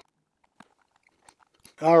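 Mostly near silence with a few faint small clicks as a screwdriver tightens the positive post screw on a rebuildable atomizer deck. A man's voice starts near the end.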